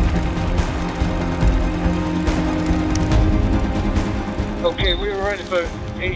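Background music with long held tones over a low rumble, and a voice coming in near the end.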